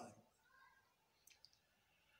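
Near silence with room tone, broken by a few faint clicks about a second and a half in.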